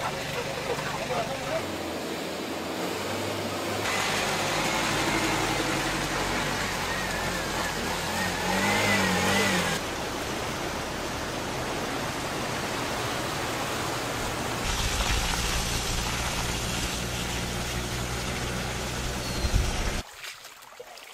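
Outdoor sound from several shots cut together, with the background changing abruptly every few seconds: a car engine running, people's voices, and a low rumble in the last few seconds.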